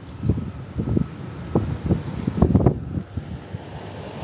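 Wind buffeting a handheld phone's microphone in irregular low gusts and bumps.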